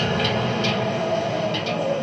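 A synthesized train sound from a synthesizer: a steady low drone with a held tone that dips slightly near the end, and a few scattered sharp clicks imitating the rattling of the rails.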